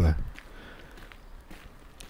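Faint footsteps of a person walking on a paved sidewalk, under low outdoor background noise.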